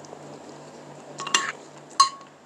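Metal spoon and fork clinking and scraping against a ceramic plate while eating: a quick cluster of sharp, ringing clinks a little over a second in and another single clink at the end.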